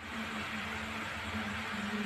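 A steady low motor hum with an even hiss over it.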